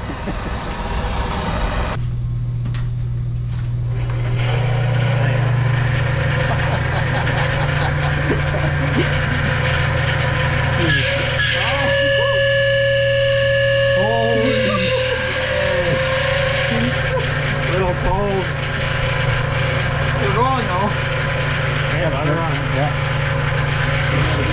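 A steady low mechanical hum, with people talking in the background. A brief held tone sounds around the middle.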